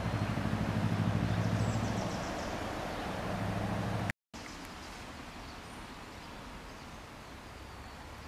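Low engine hum of a passing motor vehicle, fading away over the first few seconds, then, after a brief dropout in the audio, steady outdoor background noise.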